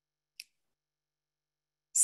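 Near silence, broken by one short, faint click about half a second in.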